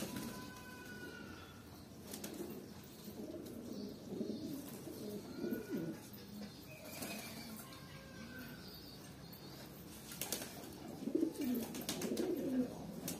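Flock of domestic pigeons cooing, the low warbling calls growing louder near the end, with a few sharp wing flaps.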